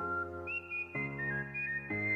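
Background music: a high melody line over held chords that change about once a second.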